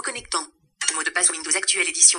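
A screen reader's synthetic voice reads on-screen text rapidly, with a brief pause about half a second in.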